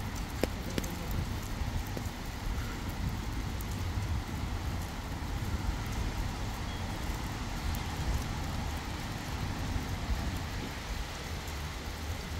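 Steady outdoor rain ambience on wet paving, with a low rumble of wind on the microphone.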